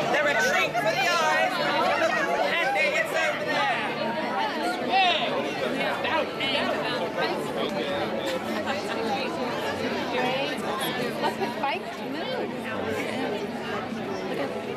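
Crowd chatter: many people talking at once, with a laugh right at the start.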